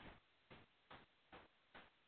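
Near silence, with four faint, evenly spaced ticks about two and a half a second.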